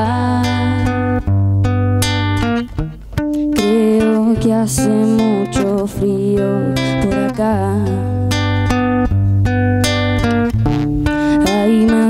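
A young woman singing a slow song, accompanying herself on an acoustic guitar. There is a brief drop in loudness about three seconds in.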